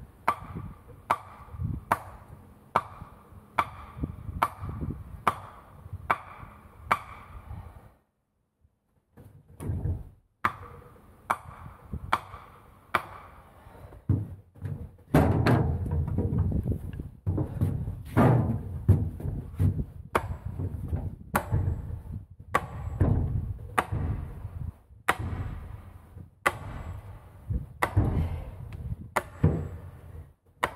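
A long-handled hammer driving a pointed wooden stake into forest ground: sharp, regular blows at about three every two seconds. There is a gap about eight seconds in, and the blows come heavier and deeper from the middle on.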